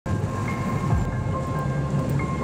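A car driving along a road, heard from inside: a steady low rumble of engine and tyres on the road surface, with a few faint steady tones on top.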